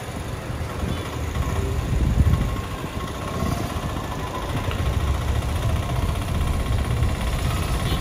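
Vehicle engine and road noise from travelling along a busy road, a steady low rumble with traffic around.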